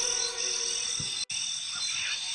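A chorus of frogs croaking, with a steady pulsing high chirr from night creatures over it.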